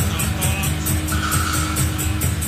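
Instrumental stretch of a 1980s rock song between vocal lines: drums keeping a steady beat over bass, with a long held guitar tone in the second half.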